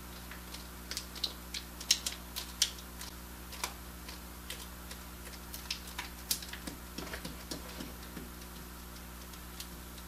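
Fingertips rubbing and pressing glued-on tire lettering into a tire's rubber sidewall: light, irregular ticks and scuffs, thickest in the first few seconds and thinning out near the end.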